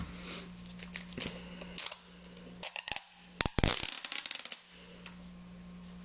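Clear adhesive tape being handled and pulled off its roll, scattered clicks with a run of crackling about halfway through, over a low steady hum.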